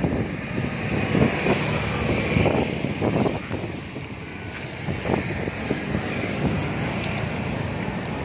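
Wind and handling noise on a phone microphone as it is moved about: an uneven rumble with irregular soft knocks.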